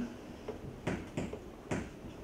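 Three short, sharp clicks spread over about a second, over faint room noise.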